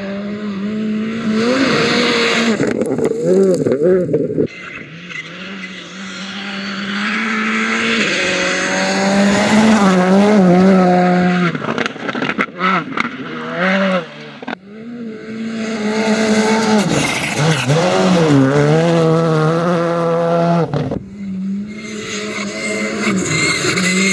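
Škoda Fabia R5 rally cars at full throttle on gravel, the turbocharged four-cylinder engines revving hard, their pitch climbing and dropping with the gear changes, and the tyres scrabbling on loose gravel. Several passes are cut together, so the sound changes abruptly a few times.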